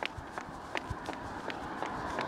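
High-heeled shoes striking asphalt at a run: sharp clicks about three a second over faint outdoor hiss.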